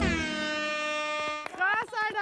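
An air horn sounds one steady blast of about a second and a half, marking the end of the two-minute no-laughing challenge. Excited voices cheer right after it, near the end.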